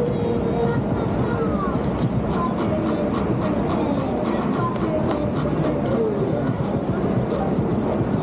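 Crowd ambience: many people talking at once over a steady city hum, with music playing.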